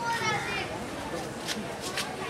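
Children's voices in the background, with high-pitched calls in the first half second, over street ambience. Two sharp clicks follow near the end.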